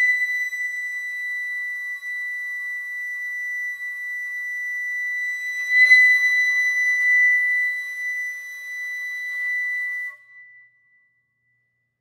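Solo concert flute holding one long, very high note. About six seconds in the note is pushed again with a breathy accent and swells, then dies away about ten seconds in.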